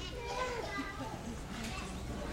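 Young children's voices chattering and calling out, with one voice standing out clearly near the start.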